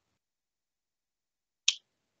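Near silence, then near the end a single short, sharp click: a mouth noise from the presenter just before he speaks again.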